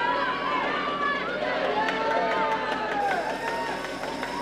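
Spectators shouting and yelling, many voices rising and falling at once, with a few sharp clicks in the middle.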